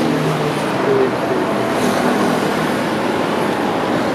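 Steady traffic and vehicle noise with faint voices in the background.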